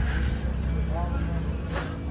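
Motor vehicle engine running nearby with a steady low rumble, and a brief faint voice about halfway through.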